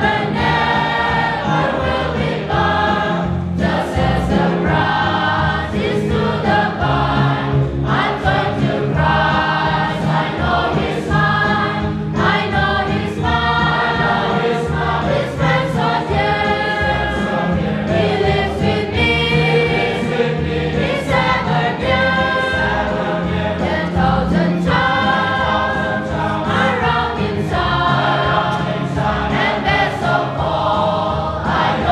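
A congregation of men and women singing a hymn together, long held notes moving from one to the next every second or so, with a steady low accompaniment underneath.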